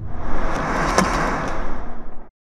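Editing transition sound effect for an animated title card: a loud noisy whoosh that starts abruptly, with a sharp hit about halfway through.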